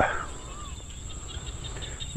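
Evening field ambience: crickets or other insects keep up a steady, high-pitched drone, and a faint wavering bird call comes near the start.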